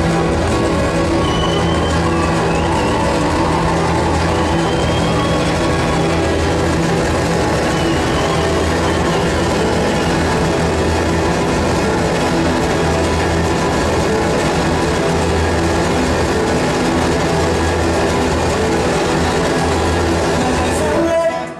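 Live acoustic guitar music through a PA, an instrumental passage without singing, loud and steady with a regular low beat.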